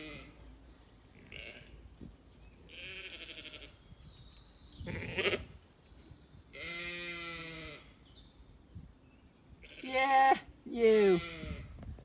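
Zwartbles sheep and lambs bleating: about six separate calls, some low from ewes and some higher from lambs, one quavering. The two loudest calls come near the end.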